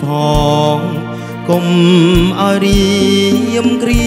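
Male singer singing a Cambodian orkes song live with a band, backed by sustained keyboard-like chords and a drum kit with regular kick-drum beats and cymbal strokes.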